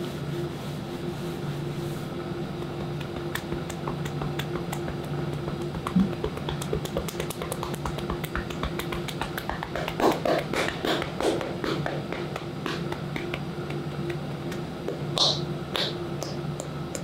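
A barber's hands doing a percussive shoulder and back massage: quick tapping and chopping strokes on the client, a light patter of clicks that grows denser, with a few louder slaps about ten seconds in.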